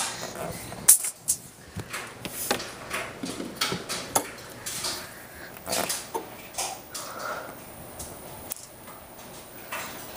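Static sparks from the charged face of a CRT television jumping between foil on the screen and a metal rod, heard as irregular sharp snaps and crackles. The loudest snap comes about a second in.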